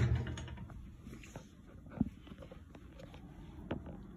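Scattered light clicks and knocks of kitchen utensils being handled, with a sharper knock about two seconds in and another near the end.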